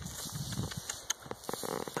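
Footsteps on dry forest litter, with rustling and a few small twig snaps in the second half.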